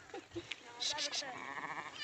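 Bleating from a mixed herd of sheep and goats: a quavering bleat starts past the middle and carries on past the end, after a short high cry just before it.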